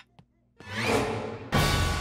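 Dramatic music sting: a rising whoosh swells about half a second in, then a sudden loud drum hit about a second and a half in, its ringing tones slowly fading.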